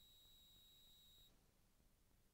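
Near silence, with a very faint high steady tone that stops a little after the first second.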